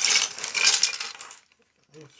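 Clear plastic bag of small plastic toy parts being handled: the bag crinkles and the pieces inside clink against each other, stopping about a second and a half in.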